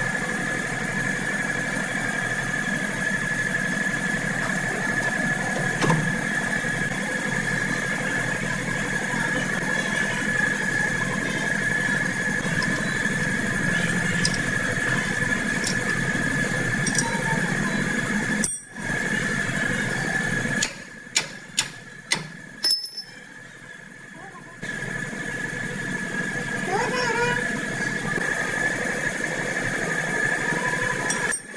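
A steady machine hum with a constant high-pitched whine, broken briefly about two thirds of the way in, where a few sharp clicks sound about half a second apart.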